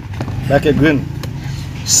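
A steady low mechanical hum, like an engine running, under a few short spoken sounds from a man's voice.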